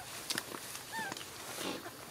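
Infant macaque giving short high squeaks, each rising then falling in pitch: one at the start and another about a second in, with a few soft clicks between them.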